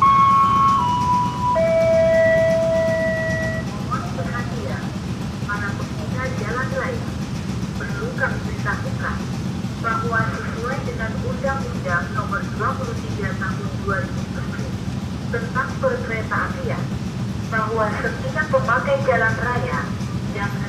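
A three-note electronic chime stepping down in pitch, the last note held longest, then a recorded voice announcement in Indonesian over the level crossing's loudspeaker. A steady low hum lies underneath.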